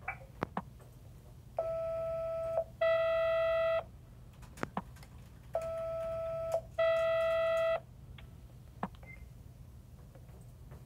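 Video intercom door-release confirmation beeps: two long steady tones, the second louder, sounded twice, once for each lock as it is released. Short sharp clicks fall between the pairs.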